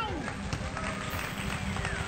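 Background pop music with a singing voice over a steady beat.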